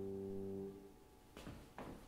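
A held piano chord ends, released about two-thirds of a second in. Two soft, short knocks or rustles follow in the quiet near the end.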